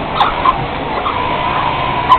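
Industrial sewing machines running on a busy factory floor: a steady mechanical din, with two sharp clicks in the first half second and a thin held whine in the second half.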